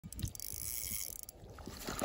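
Faint clicking and rustling from a fishing rod and reel being handled, with a few quick ticks near the start before it goes quieter.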